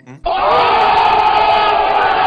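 A loud, inserted sound effect of many voices yelling together, cutting in suddenly about a quarter second in and holding on, with a thin, muffled, low-quality sound.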